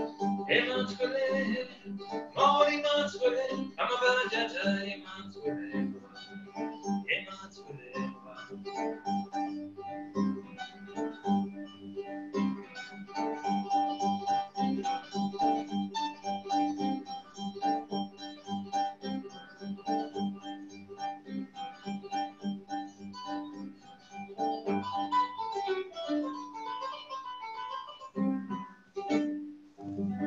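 Kora (West African harp) played as a stream of quick plucked notes over a repeating low bass figure. A voice sings over it in the first five seconds.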